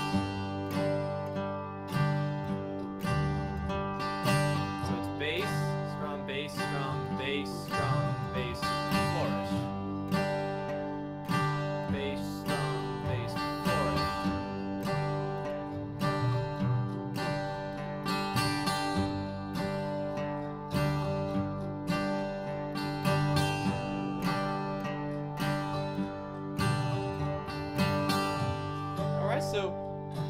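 Acoustic guitar strummed slowly on a G chord in bluegrass rhythm, with steady, evenly spaced strokes. Bass notes alternate with strums, and quick up-down-up flourishes on the high strings follow the bass note. It is played along with a slowed recording of the same G chord.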